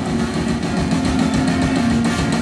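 Live salsa band playing loud and amplified, with drums, congas and bass over a held low note and a steady beat.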